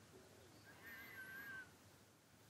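Near silence: room tone, with one faint, slightly wavering high-pitched sound lasting under a second near the middle.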